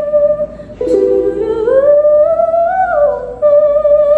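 A female singer holds a high sustained note, drops lower about a second in, then slides slowly up and back down to the high note. There is a short click about a second in.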